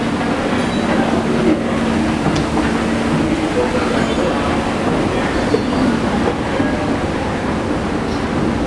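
Escalator running, a steady mechanical rumble with a low hum, voices murmuring in the background.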